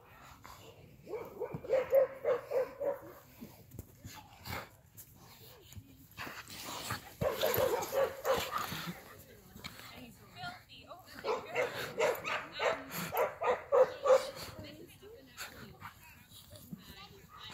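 Young husky play-fighting with another young dog: three bouts of rapid, pulsing play growls and yips, each a few seconds long. Scuffling clicks are heard between the bouts.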